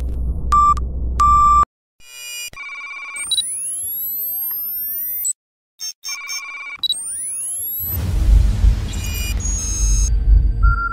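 Futuristic electronic interface sound effects: short beeps and steady electronic tones with many rising pitch sweeps. A deep rumble runs under the opening and comes back louder from about eight seconds in, and the sound cuts out briefly twice near the middle.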